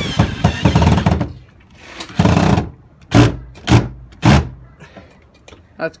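Power drill driving screws into a plywood board: one long run, then a burst and three short trigger pulses about half a second apart.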